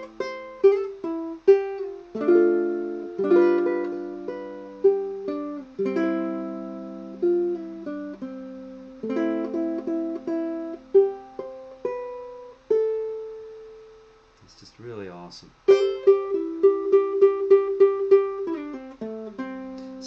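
Mya Moe tenor ukulele in striped myrtle with a wound low G, heard through its K&K pickup and a 1971 Fender Vibro Champ tube amp, fingerpicked in a melodic passage of single notes and chords. About two-thirds through, a held note rings out and dies away to a short pause. Then comes a quick run of rapidly repeated picked notes.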